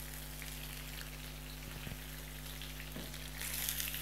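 Chicken pieces frying in hot desi ghee in an aluminium karahi: a steady sizzle with a few faint ticks, louder near the end.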